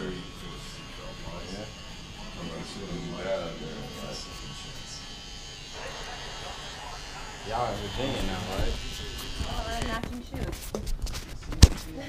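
Electric hair clipper buzzing steadily while trimming hair, with faint voices underneath. The buzz stops about ten seconds in, followed by a few knocks and one sharp click near the end.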